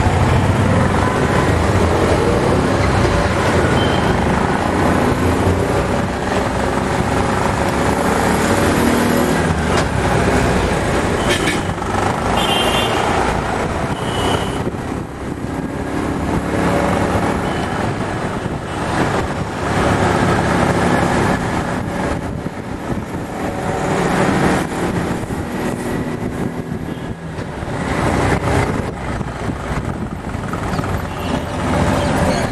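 Road traffic noise: vehicle engines running close by, with a few short high tones around the middle.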